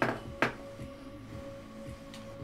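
Two sharp knocks of a hard object on the workbench, about half a second apart near the start, over quiet background music.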